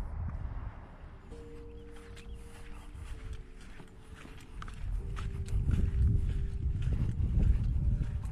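Footsteps in loose sand, with wind rumbling on the microphone that grows louder about five seconds in. Soft sustained music notes sit underneath.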